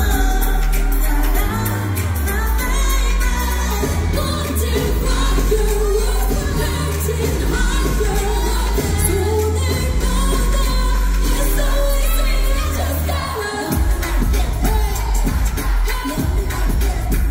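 Live K-pop girl-group performance: female voices singing into microphones over a loud pop backing track with a heavy bass line. Near the end the bass drops out and a sharper, punchier beat takes over.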